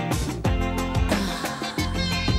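Instrumental intro of a pop-rock song: electric guitars over bass and a drum kit keeping a steady beat.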